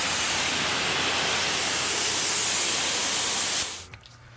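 Pressure washer jet rinsing soap off a car's paintwork: a steady hiss of spray that cuts off sharply near the end.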